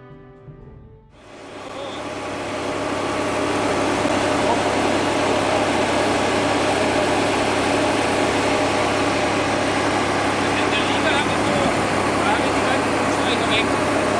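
Brief music fades out, then a tractor engine and the Agricola Italiana SN pneumatic seed drill it pulls fade in and run steadily.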